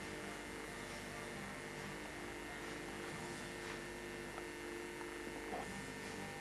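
A steady hum under an even hiss, with no clear event.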